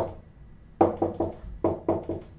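Dry-erase marker writing on a whiteboard: a string of short taps and scratchy strokes, starting about a second in.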